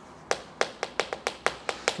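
Writing on a chalkboard: a rapid run of sharp taps, about seven a second, as the writing tip strikes and strokes the board.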